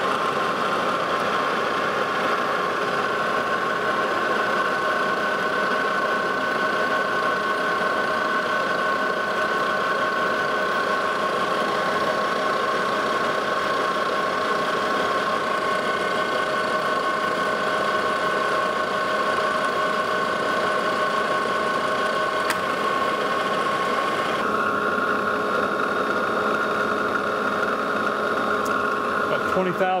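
Lodge and Shipley manual metal lathe running steadily with a whine of several steady tones while it takes a turning cut on a high-carbon steel hex bar, reducing a step to one inch. The tone shifts slightly about 25 seconds in.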